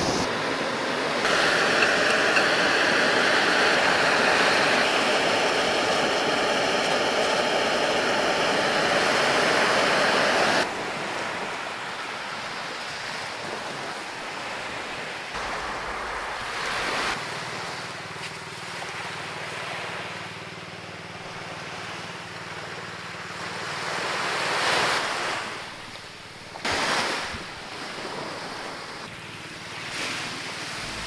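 Waves washing onto a sandy beach. For the first ten seconds a louder steady hiss lies over them and cuts off suddenly.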